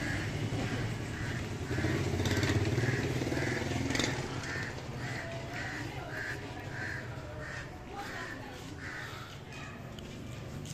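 A crow cawing over and over, about one and a half calls a second, with a steady low rumble underneath.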